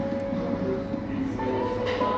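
Coffee-shop ambience: a murmur of customers' voices and a steady low rumble under background music with held notes, and a short clatter near the end.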